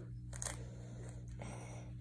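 Faint handling of a plastic Rubik's cube being twisted: one short click about half a second in and a soft scraping rub in the second half, over a steady low hum.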